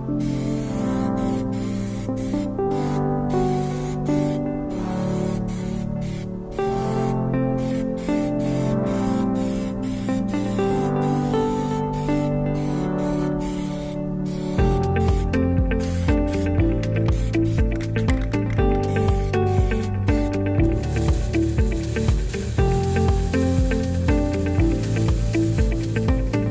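Background music, with a steady beat coming in about halfway through. Under it, an aerosol can of Plasti Dip rubber coating hisses in short bursts as it is sprayed onto a wheel.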